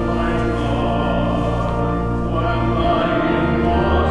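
Choral music: a choir singing long, held notes over a low bass, the bass moving to a new note about three seconds in.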